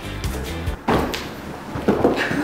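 Background music with a steady beat, broken a little under a second in by a heavy thud of a person dropping from ceiling height onto a carpeted floor, with a second thump near the end as he rolls.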